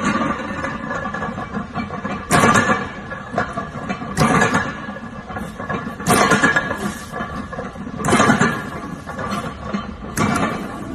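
Heavy iron barbell plates knocking down on the gym floor at the bottom of each touch-and-go deadlift rep, five times about two seconds apart, each knock with a short rattle and ring.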